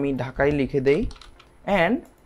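A man speaking in short phrases, with computer keyboard typing underneath.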